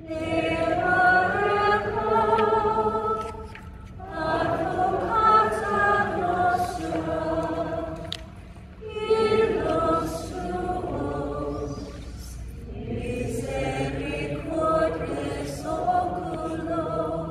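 A choir and congregation singing a slow chant in unison, in long phrases of three to four seconds with short breaths between. It is the sung close of Night Prayer (Compline), following the final blessing.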